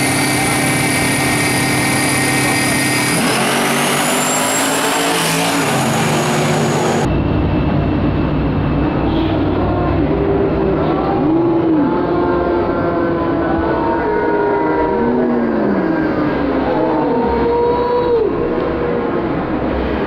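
Two drag cars, a black Buick and a turbocharged white Mustang, running their engines at the start line, then launching and racing down the strip. Their engine pitch climbs and drops again and again as they pull through the gears.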